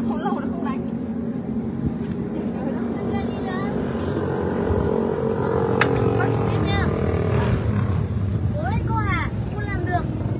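Steady low outdoor rumble, with short snatches of voices and a single click about halfway through; the piano is not playing.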